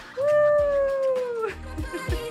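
A voice holding one high sung note for a little over a second, sagging in pitch as it ends, over background music.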